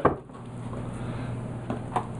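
A steady low hum under faint hiss, with two small clicks near the end.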